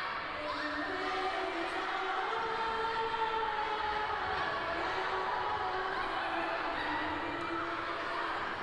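Girls' choir singing in a cathedral, many voices holding long overlapping notes in a dense cluster of pitches, with new notes entering and shifting slowly against each other.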